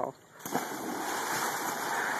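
A person jumping into a swimming pool: a sudden splash about half a second in, then water churning and spraying.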